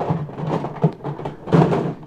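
Hard plastic Nerf blasters knocking and clattering against each other as they are shifted about in a pile, with rustling handling noise. The loudest clatter comes about one and a half seconds in.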